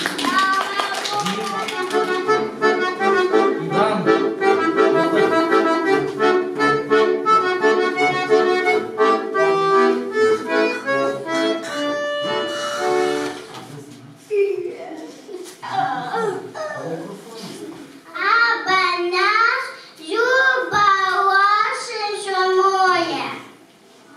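Accordion playing a tune, which stops about thirteen seconds in. After that, a child's voice comes in broken phrases over the microphone.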